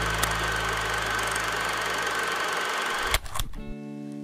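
Old film projector sound effect: a steady mechanical whirr and rattle with hiss and a thin steady tone. It stops about three seconds in with a few clicks, while the low end of the previous music fades out underneath.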